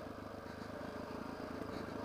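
Dual-sport motorcycle engine running steadily while the bike is ridden along a dirt trail.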